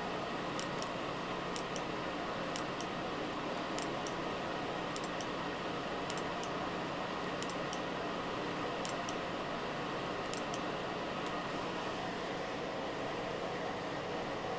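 A 1990s Holmes ceramic space heater running on high heat: its fan blows a steady rush of air over a constant low motor hum.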